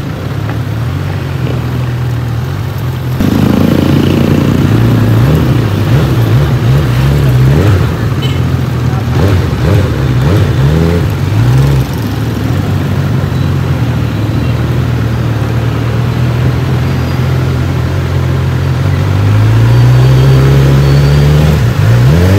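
Honda CB1000R inline-four engine running through its stock exhaust while the bike is ridden in traffic. Its pitch rises and falls several times with throttle and gear changes from a few seconds in, then climbs steadily near the end as it accelerates.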